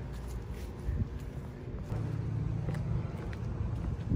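A low street rumble of a motor vehicle going by, growing steadier and stronger about halfway through, with faint scattered clicks of footsteps and handling.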